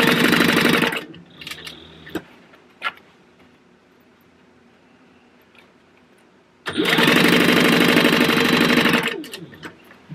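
Industrial sewing machine stitching in two runs: it sews for about a second and stops. After a pause with a couple of small clicks, it sews again for about two seconds starting roughly two-thirds of the way in, then slows to a stop.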